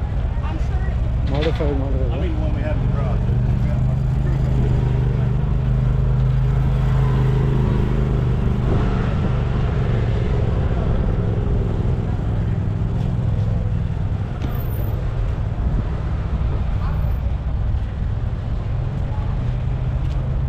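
A steady low engine drone with voices talking in the background.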